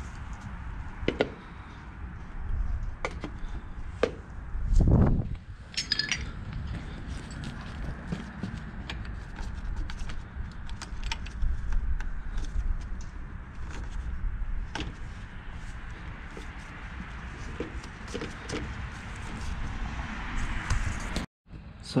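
Scattered clicks, clinks and knocks of a plastic spill-free coolant funnel and its yellow adapter being handled and fitted onto a car's radiator filler neck, with one heavier dull thump about five seconds in.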